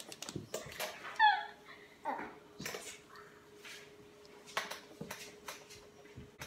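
Dry-erase markers writing on a whiteboard: scattered short taps and strokes, with a brief high squeak about a second in.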